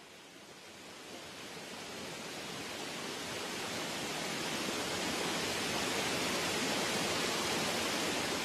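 Rushing water of a woodland brook pouring over rocks and a small waterfall: a steady, even rush that fades in gradually and grows louder.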